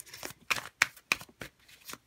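Tarot deck being hand-shuffled: an irregular run of sharp card snaps and slaps, about a dozen in two seconds.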